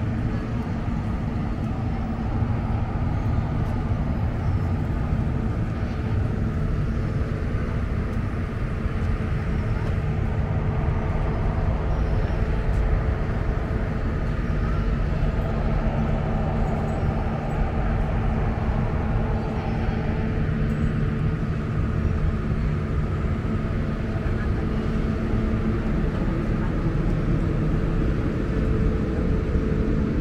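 Steady outdoor street ambience: traffic noise with indistinct voices of people nearby and a constant low hum underneath.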